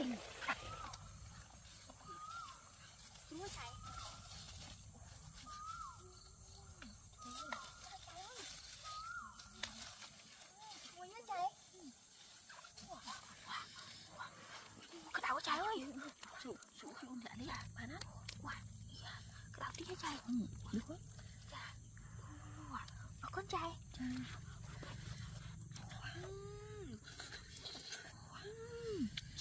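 A chicken calling with short calls about once a second for the first several seconds, then more scattered calls, with quiet voices and handling clicks around it.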